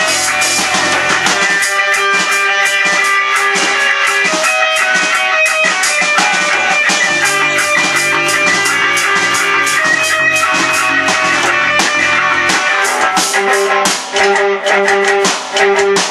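A rock band, with electric guitar, bass guitar and drum kit, playing loudly together in a small room. Near the end the sound thins to a guitar repeating one note in short, choppy stabs, with brief gaps.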